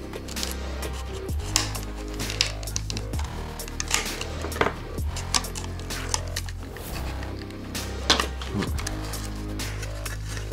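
Background music with a steady bass line. Over it come many small, irregular clicks and taps of plastic parts as a DJI Mavic Pro drone's shell and folding arm are pried apart with a plastic pry tool.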